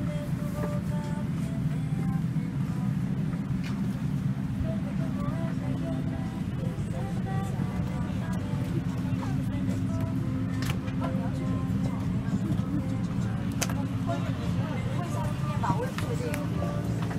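Boeing 787-9 cabin ambience while passengers get off: a steady low hum with passengers talking among themselves and a few sharp clicks.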